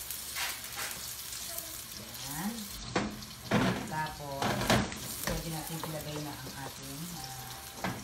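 Diced onions sizzling in oil in a stone-coated wok, stirred with a wooden spoon, with a few sharp knocks of the spoon against the pan a few seconds in.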